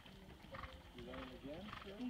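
Faint hoofbeats of a horse galloping on soft arena dirt, with people talking quietly.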